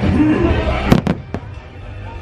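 Fireworks show soundtrack with music and voices, broken about a second in by three sharp firework bangs in quick succession.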